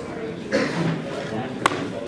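Many students talking among themselves at once in a lecture hall, a busy overlapping murmur of voices. A single sharp knock sounds about a second and a half in.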